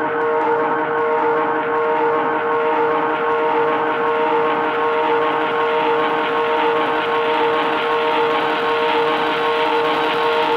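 Hardcore gabber electronic music: a sustained, noisy synth drone holding one steady chord, with no drum beat.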